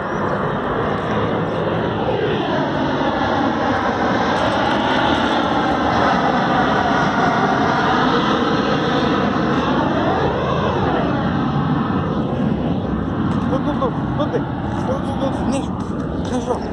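An aircraft flying low overhead: a loud engine noise that builds in the first second or two and holds throughout, with a slow sweeping shift in pitch as it passes, easing slightly near the end.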